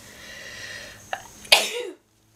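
A woman sneezes once into her sleeve, a sudden burst about one and a half seconds in, after a breathy build-up and a short catch in the throat. It is an allergy sneeze, which she puts down to allergy season.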